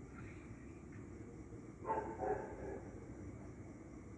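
A dog barking a couple of short times about two seconds in, over steady low background noise.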